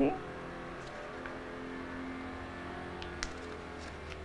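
Soft background music with long held notes over a faint steady hum, with a single light click about three seconds in.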